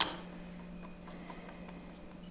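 Quiet room tone with a steady low hum and a few faint ticks, after a brief sharp click at the very start.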